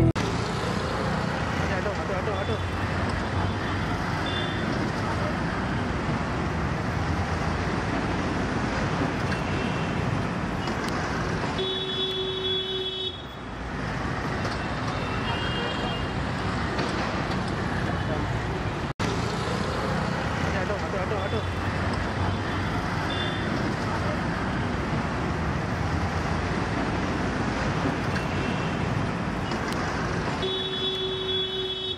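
Steady street traffic noise with indistinct voices, and occasional car horn toots, the longest one about twelve seconds in.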